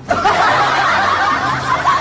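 A man's loud, high-pitched laughter, wavering and unbroken, an exaggerated mock sob that tips over into laughing.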